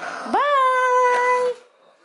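A child blowing a yellow party blower: one loud held note with a buzzy, reedy tone that swoops up at the start, holds steady for about a second and cuts off about a second and a half in.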